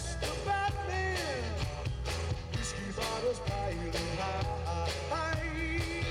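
Live rock band playing at full level: a man singing lead, holding and sliding between notes, over guitar, bass and drums keeping a steady beat.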